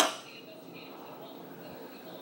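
The end of a spoken word, then faint, steady room noise with no distinct sound events.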